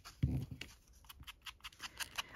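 Faint taps and scuffs of a foam ink blending tool being pressed onto an ink pad and dabbed onto the edge of a small paper photo, with a slightly louder bump just after the start.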